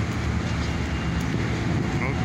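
Steady low rumble of city street traffic and construction machinery.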